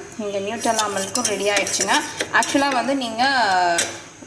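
A metal spoon stirring milky tea in a ceramic mug, with sharp clinks against the mug's sides, mostly in the second half, under a woman's voice.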